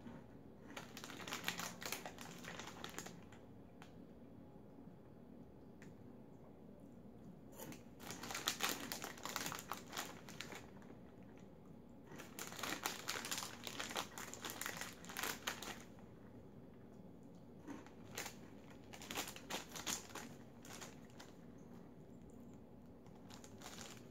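Foil snack bag crinkling as it is handled, in four separate bursts of a few seconds each with quiet between.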